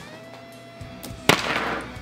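A hand swipes three plastic wrestling action figures off a toy ring: one sharp smack about a second in, followed by a brief clatter as they fall.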